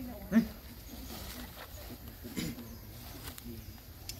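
A few short pitched vocal sounds: a brief one about half a second in and another a little past two seconds, with fainter ones between, over a low outdoor background.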